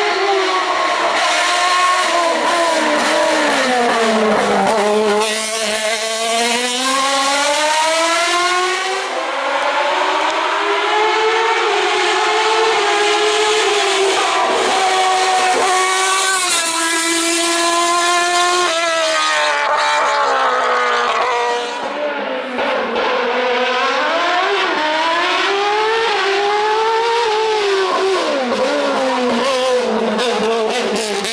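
Single-seater formula race car's engine at high revs, its pitch climbing and then dropping again and again as it goes through the gears and slows for the bends. There is a short dip in loudness near the two-thirds mark.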